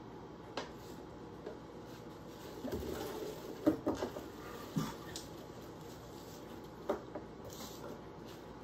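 Chopped apple pieces tipped off a plastic cutting board into a crock pot: a scatter of soft knocks and thumps as the pieces drop in and the board knocks against the pot, busiest a few seconds in, with one more knock near the end.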